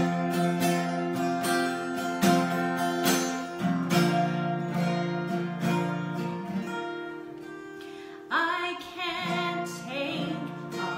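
Acoustic guitar strumming the intro chords of a southern gospel song, each chord ringing out, the playing thinning and fading toward the end. About eight seconds in, a woman starts singing with a wavering vibrato over the guitar.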